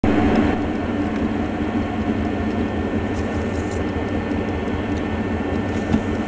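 Electric potter's wheel running, a steady motor hum with the wheelhead spinning at constant speed.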